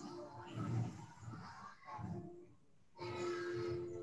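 Indistinct vocal sounds heard over a video call, in two stretches, the second ending in a held note.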